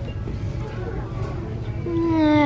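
Steady low background noise of a shop, with faint music. Near the end a boy gives a drawn-out groan of disgust.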